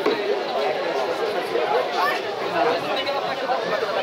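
Indistinct chatter of several people talking at once, with no music playing.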